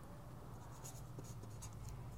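Faint scratching of a pen on paper as short strokes are drawn, with a low steady hum underneath.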